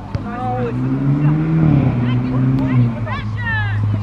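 A motor vehicle's engine humming, its pitch rising and then dropping back just before two seconds in. Voices call out over it at the start and near the end.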